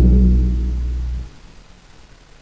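The closing seconds of a harsh noise track: a low, heavy drone fades and then cuts off suddenly about a second and a quarter in, leaving only faint hiss as the track ends.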